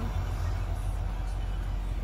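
Steady low rumble inside a pickup truck's cab, with nothing else standing out.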